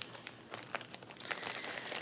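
Faint crinkling and rustling of something being handled, with a few scattered light clicks.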